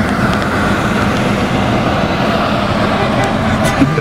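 Steady road and wind noise inside the cabin of a moving SUV, an even rushing sound with no breaks.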